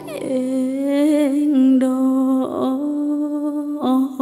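A female singer holds two long, slightly wavering notes of a slow Thai Isan ballad over soft backing music, with a short break between them.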